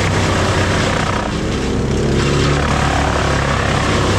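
Bandit wood chipper running at full throttle and chipping branches, its engine drone under a dense grinding and rushing of wood being shredded and blown out the chute. The chipping noise thins briefly a little over a second in, then picks up again.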